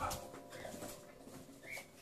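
Nursing puppy whimpering, with a short high squeak near the end.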